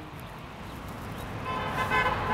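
Low rumble of a passing vehicle growing louder, with a car horn sounding one short steady note near the end.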